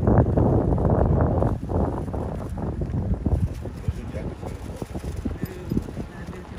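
Wind buffeting the microphone on a moving golf cart, heaviest for the first second and a half. The cart's body rattles and knocks over the lane.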